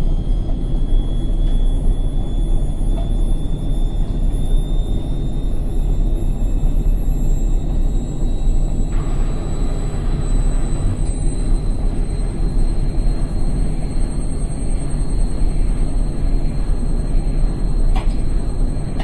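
Indesit washing machine spinning: a steady low rumble from the drum, with a high motor whine that climbs slowly in pitch. A hiss joins in about halfway through.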